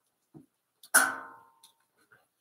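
A single sharp ringing knock about a second in, its tone dying away within about half a second.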